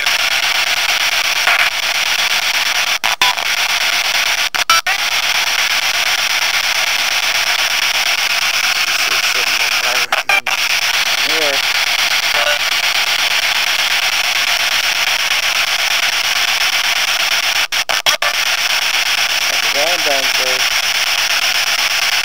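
Steady radio static hiss, cut a few times by brief dropouts to silence, with faint fragments of voice showing through now and then.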